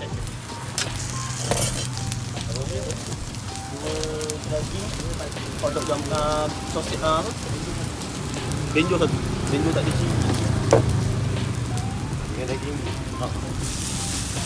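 Beef burger patty sizzling on a flat-top griddle: a steady frying hiss over a low steady hum, with voices in the background.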